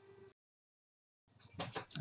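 Near silence: the sound drops out completely for about a second at an edit, with only faint sound at either side before speech resumes.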